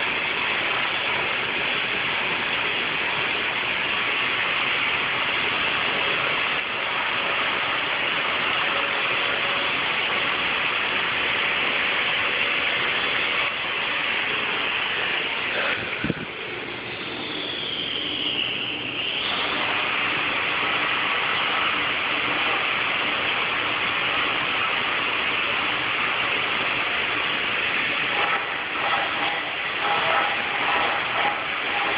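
Stone-cutting bridge saw running with a steady, loud hiss and hum. A little past halfway a click is followed by a few seconds where the noise thins and a high whine slides down and back up.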